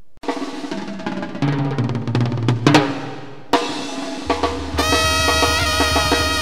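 Sinaloan banda brass band playing. First comes a drum passage with rolls on the snare and bass drum over low tuba notes. About three and a half seconds in, the full band strikes up, with brass and clarinets holding notes over a steady tuba line.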